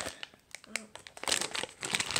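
Clear plastic packaging bag crinkling in the hands as it is pulled open, the crackle growing busier in the second half. A brief spoken "oh" a little before a second in.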